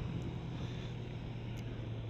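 1997 Kawasaki ZZR250 parallel-twin motorcycle running at a steady cruise, a low even engine hum under wind rush on the microphone.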